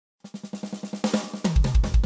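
Band music opening with a rapid drum roll, about ten hits a second, that builds in loudness; about one and a half seconds in, a heavy bass drum and bass line come in on a steady beat.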